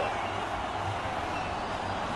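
Steady, even background noise from the football broadcast's stadium microphones, with no crowd noise standing out.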